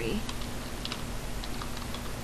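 Computer keyboard typing: a handful of short, unevenly spaced key clicks as a single word is typed.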